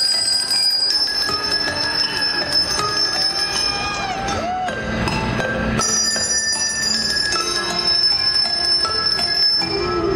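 A tune played on a set of handbells by four ringers, with many bell notes struck and overlapping as they ring on. Some high notes sustain for several seconds, and a couple of notes bend in pitch about halfway through as bells are swung.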